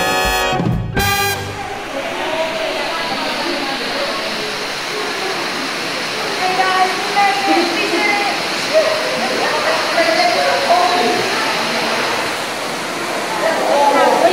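Steady rushing of Ruby Falls, an underground waterfall in a cave, with scattered voices of people talking over it. Music stops about a second in.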